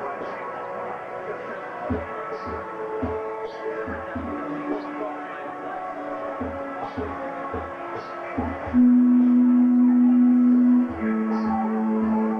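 Electric keyboard playing slow, sustained notes over a soft low pulse about twice a second. Near the end a loud low note is held for about two seconds, then steps down to a lower one.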